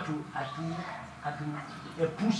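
A person's voice murmuring in short pitched phrases with no clear words.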